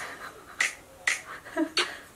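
Finger snaps keeping time, a sharp snap about every half second, four in all. A brief hum comes between the last two.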